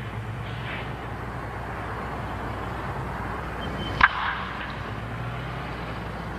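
Steady low hum and hiss of an old recording, broken about four seconds in by a single sharp crack of a bat hitting a pitched baseball, a hit that goes for a ground ball.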